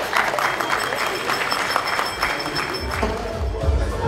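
Audience applause breaking out at the end of a speech, a dense patter of clapping with crowd voices. About three seconds in, dance music with a heavy bass beat starts up.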